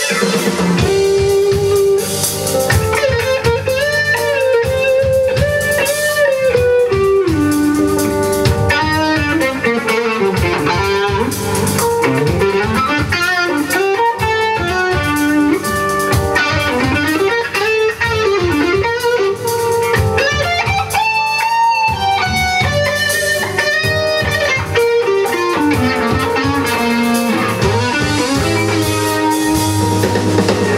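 Live rock band playing an instrumental section: an electric guitar solo with many bent and sliding notes over bass, drums and keyboards.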